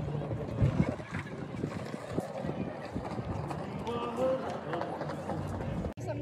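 Outdoor background with people's voices talking indistinctly, over a steady rumble and scattered short knocks.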